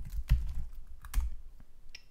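Computer keyboard keystrokes: a handful of separate key clicks spaced unevenly over two seconds.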